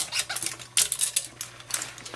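Quick, irregular clicks and taps as oil-paint brushes are handled and worked in a can of solvent, about five a second.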